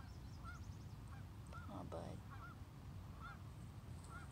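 Geese honking faintly, short calls coming about once a second, with a brief louder sound about two seconds in, over a steady low outdoor rumble.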